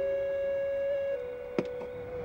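Background film-score music: soft, pure-toned held synthesizer notes, one note sustained and then stepping down to a slightly lower note a little after a second in. A single sharp click sounds near the end.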